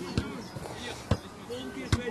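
Three sharp thumps of a ball striking the ground, a little under a second apart, over faint voices.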